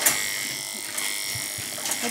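Electric grooming clippers running with a steady high hum, starting with a click.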